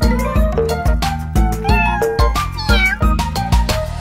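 Cartoon cats meowing, several drawn-out meows gliding up and down in pitch, over a children's song's backing music with a steady beat.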